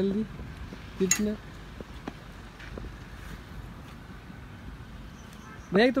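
Mostly a quiet, steady background, broken about a second in by a brief voice and a single sharp click. A man's speech starts near the end.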